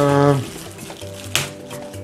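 A man's voice held briefly at the start, then a short crinkle of plastic packaging being handled about one and a half seconds in.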